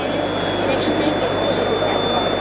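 Indistinct voices over a dense, steady background noise, with a low steady hum and a thin high-pitched whine throughout.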